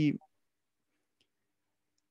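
A man's word trailing off, then a pause of near silence.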